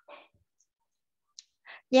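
A pause in speech holding a single faint computer click about 1.4 s in, a short soft noise at the start and a soft breath-like sound just before the voice resumes near the end.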